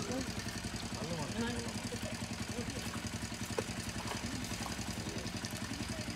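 A small engine running steadily with an even, rapid beat, with brief snatches of voices over it.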